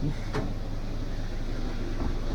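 A steady low hum of indoor background noise, with one brief faint click about a third of a second in.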